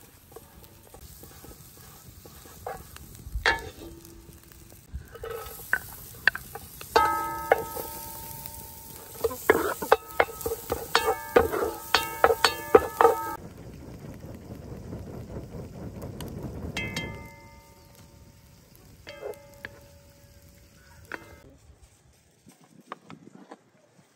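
Wooden spatula scraping and knocking around a large metal frying pan as butter melts and minced garlic fries in it over a faint sizzle; many of the knocks leave a short ringing from the pan. The clatter is busiest through the middle and dies away near the end.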